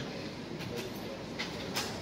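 Steady low room rumble with faint murmur, and a few sharp clicks and knocks in the second half from a handheld microphone being handled and set up at the podium.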